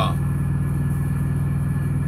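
Semi truck's diesel engine idling steadily, a low even drone heard inside the cab.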